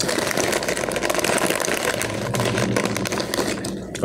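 Crinkly Ruffles chip bag rustling and crackling as a hand rummages inside it for chips.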